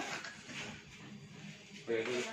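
Mostly quiet room tone with faint background voices; a man starts speaking close to the end.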